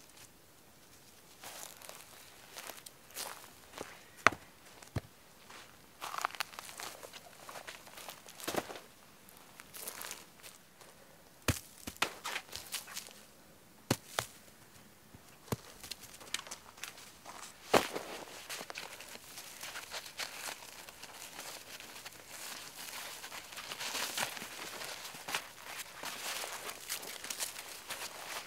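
Footsteps crunching over dry forest floor with scattered sharp snaps of twigs and branches as ground debris is cleared by hand, and a denser rustle near the end.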